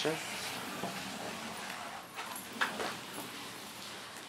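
Pencil drawing a long arc on brown pattern paper: a steady, continuous scratching of lead on paper, lighter in the second half.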